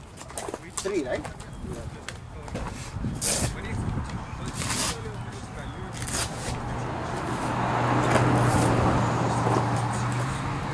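Faint voices, a few short bursts of noise, and a low steady hum that swells louder near the end.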